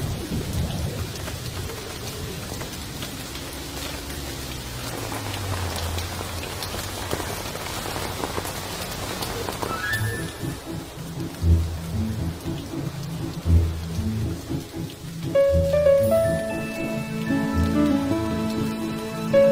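Steady rain with a low rumble of thunder at the start. About ten seconds in, music enters over it, with deep bass notes roughly every two seconds and higher held tones from about fifteen seconds.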